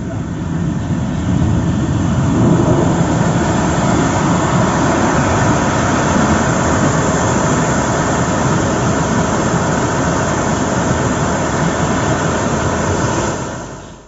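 Floodwater rushing in a muddy torrent: a loud, steady roar of water that fades out near the end.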